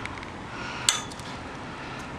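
A single sharp, light clink a little under a second in, over steady outdoor background noise.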